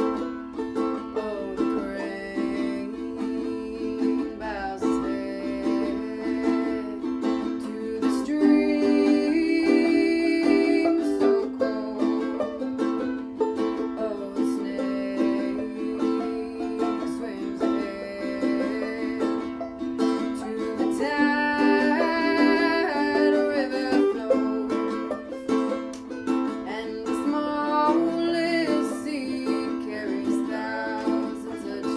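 A live acoustic song: a plucked string instrument played in a steady rhythm, with singing coming in stretches, about a third of the way in and again past the middle.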